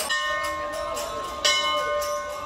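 Hanging brass temple bell rung by hand, struck twice about a second and a half apart, each strike ringing on. Devotional music plays faintly underneath.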